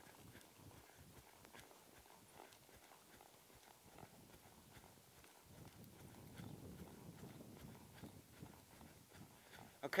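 Faint, soft hoofbeats of horses moving on a loose dirt arena surface, with a faint low rumble through the second half.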